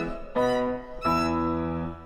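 Closing chords of a piano and violin accompaniment: two loud sustained chords, the first about a third of a second in, the second about a second in and held until near the end, ending the aria.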